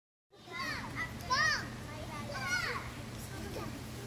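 Young children's voices: three short high-pitched calls, the loudest about a second and a half in, over a steady low hum.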